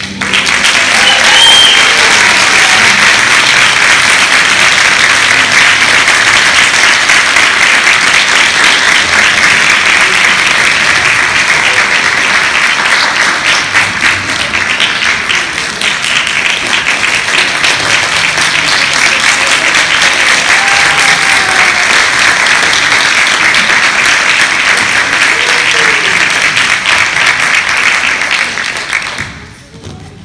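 Audience applauding loudly and steadily after a string orchestra piece ends, with a few cheers in the clapping; the applause fades out near the end.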